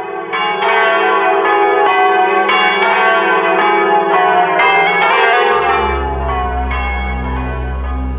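Church tower bells ringing, a quick run of overlapping strikes, each one ringing on. After about five and a half seconds the strikes thin out and a low steady hum takes over.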